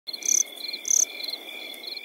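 Crickets chirping: a steady high trill, with two louder chirps within the first second.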